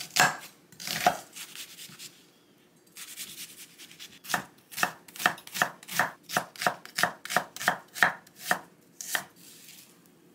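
Chef's knife dicing an onion on a wooden cutting board. A couple of separate cuts come first, then a soft rustle, then a quick, even run of chops at about three a second, each a sharp knock of the blade on the board.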